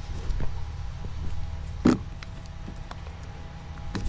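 Steady low background rumble, with a few faint ticks and one short, sharp click about two seconds in.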